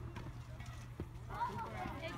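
A single sharp knock about a second in, then high-pitched voices calling out.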